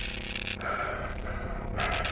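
A low, steady droning hum with a faint hiss over it.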